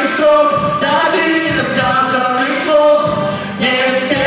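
A song with sung vocals over musical accompaniment.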